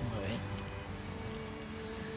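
Soft background music holding one steady note, over a faint, even rain-like hiss.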